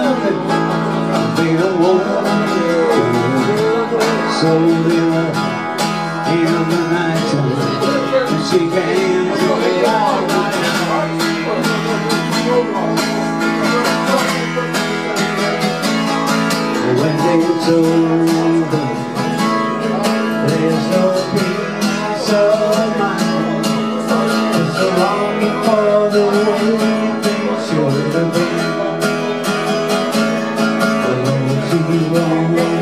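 Acoustic guitar strummed steadily, with a man singing over it, played live through a small PA.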